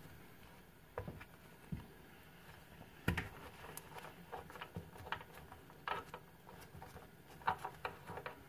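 Plastic toilet-seat mounting nut being worked by a gloved hand: faint, scattered clicks and scrapes of plastic against porcelain, the sharpest click about three seconds in.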